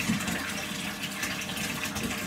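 A steady, even hiss with no clear events in it.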